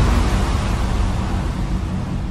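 A low rumbling sound effect with a hiss over it, the sound of a channel logo card, easing off slowly.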